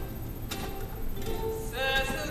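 Ukulele playing softly in a gap between sung lines, with a woman's singing voice coming back in near the end.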